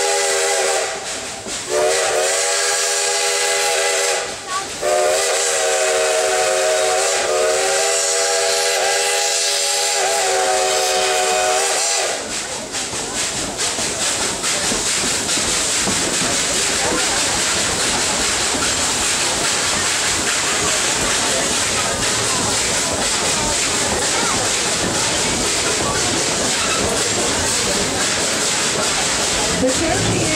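A steam locomotive's chime whistle blows several notes at once in three blasts: two short ones in the first four seconds, then a long one that ends about twelve seconds in. After that comes the steady noise of the train running.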